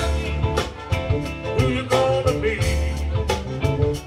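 Live blues band playing an instrumental passage: electric guitars over bass guitar and drum kit, the lead notes bending and wavering in pitch.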